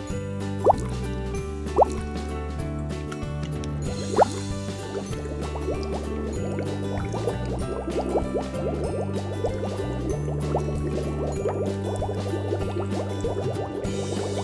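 Background music with water dripping and plopping in a shallow paddling pool as a toy fishing line and plastic fish move through it: a few single drips in the first five seconds, then many small quick drips and bubbling from about six seconds in.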